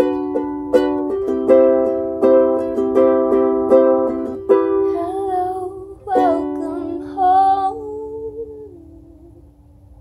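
Closing bars of a song on a strummed acoustic string instrument: chords struck about every three-quarters of a second, then a short wordless sung line and a final chord that rings out and fades away.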